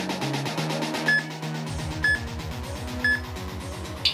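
Workout-timer countdown beeps: three short, identical beeps one second apart, counting down the last seconds of an exercise interval, over background music.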